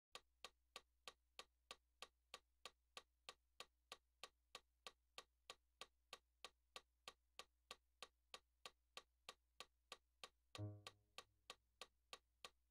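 Metronome clicking at a steady tempo, about three faint clicks a second, counting in before piano playing. About ten and a half seconds in, a single low note sounds briefly on the digital piano and dies away while the clicks go on.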